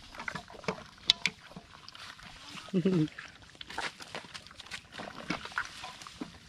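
Hands kneading a squid head in marinade in a metal wok: wet squelches and small clicks against the pan, with a sharper click about a second in. A short voice sound breaks in about three seconds in.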